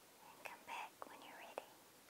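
A very soft whisper, a second or so long, with three small clicks in it.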